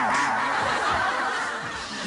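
Studio audience laughing loudly all at once, the laughter easing off gradually over two seconds.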